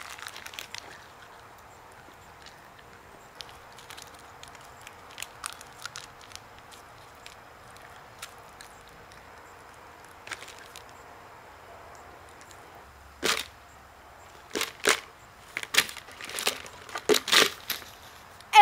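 Crackling and sharp clicks from a Skittles packet being handled and Skittles being eaten: faint and scattered at first, then a quick run of louder clicks in the last five seconds.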